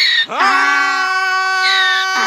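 A donkey braying while a man screams along with it in long held notes, the two voices sounding together; the sound breaks briefly at the start, then rises into a long steady note.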